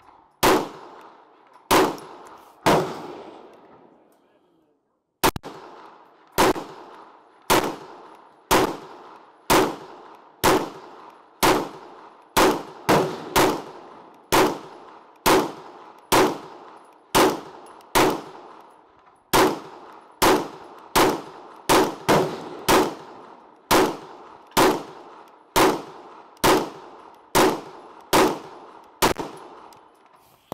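Semi-automatic fire from a KRISS Vector in 9mm with 147-grain full metal jacket rounds: single shots at a steady pace of about one a second, sometimes quicker, each followed by an echoing tail. Near the start there is a pause of about two seconds.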